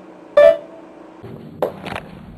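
Upright piano: one note struck about half a second in, ringing briefly as it dies away. About a second later the playing has stopped, and the camera is handled, with a low thump and rustling near the end.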